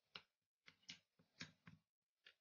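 A metal spoon stirring thick tomato sauce in a glass bowl, giving faint, irregular clinks and scrapes against the glass, about five or six in two seconds.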